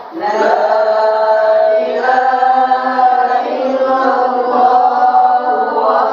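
Qur'an recitation: a single voice chanting verses in melodic tilawah style with long held notes. A brief break comes right at the start before the chanting resumes.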